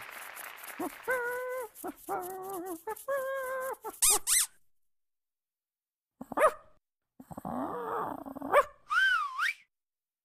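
Dog sounds for a sock-puppet dog: a run of short, high, held yelps, then quick rising squeaks, a pause, and a rough call ending in a rising-then-falling whine near the end.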